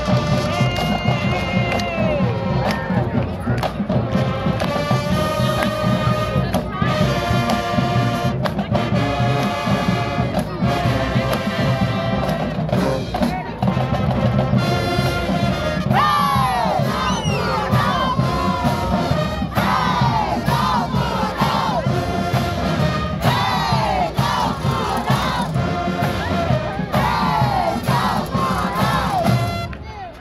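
Marching band playing loudly: sousaphones and other brass over a steady drumline beat, with brass falls sweeping up and down in the second half and shouting voices mixed in. The playing cuts off at the very end.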